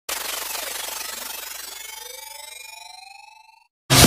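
Synthesized riser sound effect: a sudden noisy blast with several tones gliding upward, fading over about three and a half seconds with a fast flutter, then cutting off. Loud electronic dance music kicks in right at the end.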